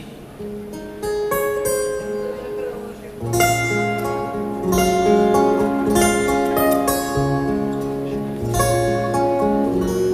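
Fingerpicked acoustic guitar playing an instrumental passage, single plucked notes ringing on. It starts softly, and deeper bass notes join about three seconds in.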